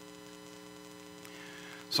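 Steady electrical mains hum from the audio system, a low drone made of several steady tones, in a pause between words; a man's voice starts right at the end.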